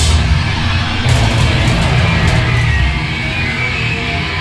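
Heavy hardcore band playing live, loud: distorted electric guitar and bass over a drum kit. Cymbal crashes hit at the start and again about a second in.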